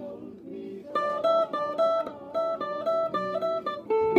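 Stratocaster-style electric guitar picking a requinto lead melody of quick single notes, growing louder about a second in.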